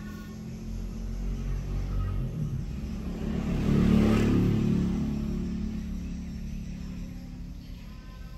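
A motor vehicle passing by: its rumble and road noise grow louder to a peak about halfway through, then fade away.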